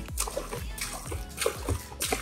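Soda poured in two streams from bottles, splashing onto water beads and small balls in a shallow pit, over background music with a beat.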